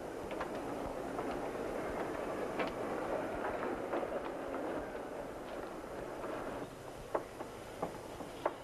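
Railway station ambience with a train waiting at the platform: a steady noise from the train, with scattered footsteps and small knocks as people board. The noise eases a little near the end.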